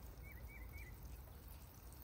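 Water spraying from a plastic watering can's rose onto grass, a faint, even shower. A few short high chirps come about half a second in.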